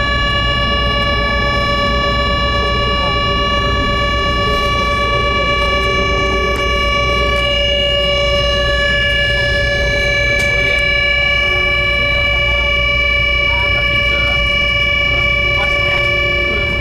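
Running noise of an electric passenger train heard inside the cabin: a steady low rumble with a constant high whine rich in overtones, holding the same pitch at a steady speed.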